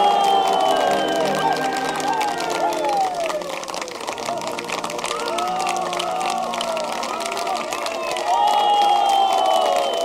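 Wedding guests applauding and cheering, with music playing underneath.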